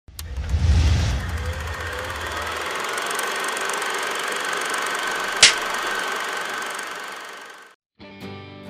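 Intro sound effect: a deep rumbling boom in the first second, then a long steady noisy whoosh with a faint held tone, a sharp click about five and a half seconds in, and a fade-out near the end.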